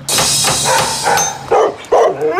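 A recorded dog barking: a harsh run of barks for over a second, then two short barks near the end. These are the barks the dog gave at a stranger at the gate.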